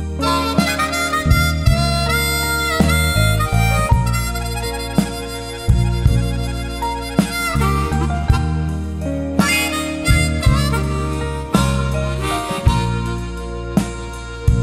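Instrumental break in a blues song: a harmonica plays a solo with bent notes over a steady bass line and rhythmic backing.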